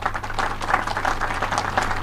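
Audience applauding, many hands clapping at once in a dense, steady patter.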